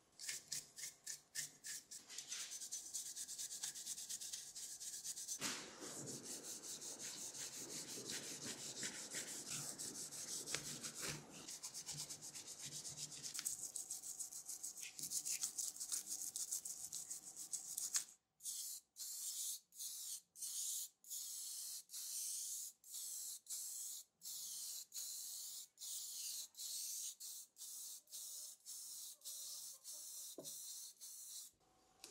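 A toothbrush scrubbing the grimy metal housing of a small electric motor in quick back-and-forth strokes. About eighteen seconds in, this gives way to short, regularly spaced hissing bursts of an aerosol spray can painting the motor black.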